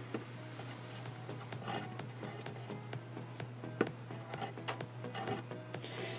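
Faint rubbing and light ticks of embroidery thread being pulled and knotted by hand over a cardboard board, over a steady low hum.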